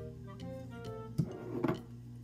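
Soft background music with held notes, and twice, a little over a second in, a short handling noise as a paper towel is pulled from a glass bottle.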